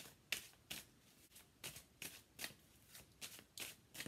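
A deck of tarot cards being shuffled by hand: short, soft riffling strokes about two to three a second, with a brief pause about a second in.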